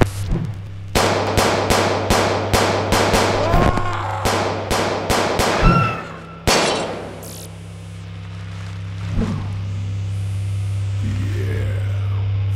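A rapid run of gunshot sound effects, about three shots a second for some five seconds, with a last, loudest shot about six and a half seconds in, over a steady low hum that carries on after the shots stop.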